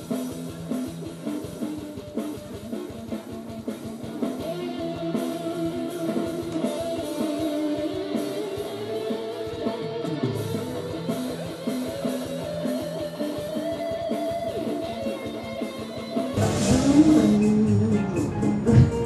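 Live amplified electric guitar playing rock-style lines with held and sliding notes over a drum beat. About sixteen seconds in it gives way abruptly to different, louder music from an electronic keyboard.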